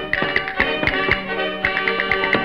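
Instrumental break in a 1931 gramophone recording of a Spanish folk song: piano accompaniment with sharp percussive clicks several times a second, in a dull, narrow old-record sound.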